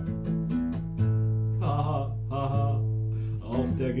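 Nylon-string classical guitar played by hand: quick picked strokes in the first second, then low bass notes and chords left ringing.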